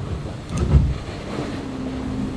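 Steady background noise in the cabin of a large racing trimaran, with a low thump about three quarters of a second in.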